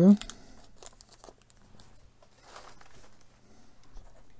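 A small clear plastic parts bag crinkling quietly as it is worked open and handled, with scattered light ticks.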